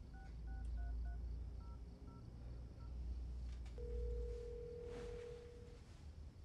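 Mobile phone keypad dialing tones, a quick run of short touch-tone beeps, followed about four seconds in by one ringback tone lasting about two seconds as the call rings through.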